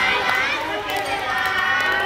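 Voices of several people talking and calling out, one voice held longer in the second half.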